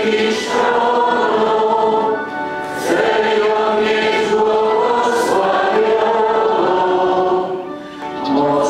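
Many voices singing a slow church hymn together, the sung phrases broken by short pauses a little after two seconds in and near the end.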